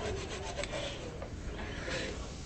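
Faint rubbing and scraping of wood and wire as hands grip and work a wired red loropetalum bonsai branch.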